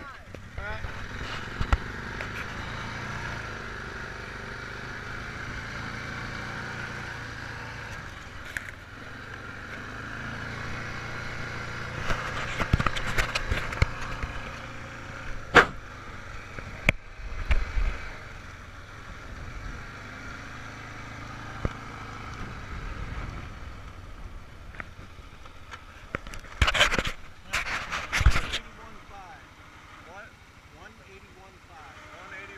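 Handling noise from an action camera held in the hands: muffled rubbing, a couple of sharp knocks in the middle and loud scraping near the end, over a steady low rumble from an ATV.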